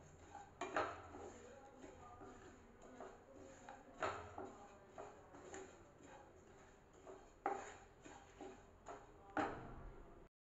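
Wooden spatula stirring and scraping whole seeds and spices around a non-stick kadhai as they dry-roast on low heat: faint, irregular scrapes and light knocks every second or two.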